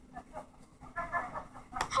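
A person's voice making a few short, quiet, high-pitched sounds about a second in.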